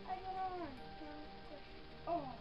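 A single meow-like call, just under a second long, that holds its pitch and then slides down, over soft background music.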